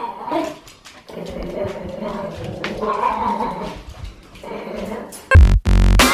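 A small dog growling in a long, wavering, drawn-out grumble, complaining at being sent to bed. Near the end, loud electronic music with heavy bass starts.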